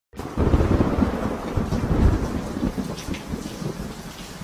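Thunder rumbling over steady rain, a storm sound effect. The rumble is loudest in the first two seconds and then fades away.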